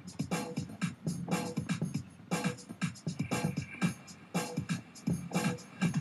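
A GarageBand-made background soundtrack playing back with a quick, steady beat. It is loud enough to overpower the water-skiing clip's own boat and water noise.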